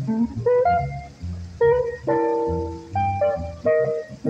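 Amplified archtop jazz guitar playing an instrumental break of single-note lines and a few held chords, over steady plucked notes on an upright double bass.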